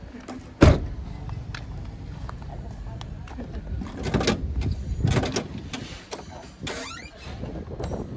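A car door on a 1996 Toyota RAV4 is slammed shut about half a second in, a single sharp bang. It is followed by a low rumble of wind and handling noise on the microphone, with a few smaller knocks and rustles.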